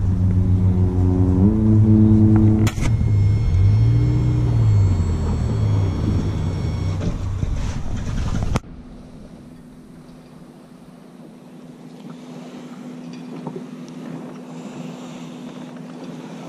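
A 90-horsepower outboard motor running, its pitch stepping up about a second and a half in and rising then falling again around four seconds in, with a thin high whine over it for a few seconds. It cuts off abruptly a little past the halfway point, leaving a much quieter steady hum.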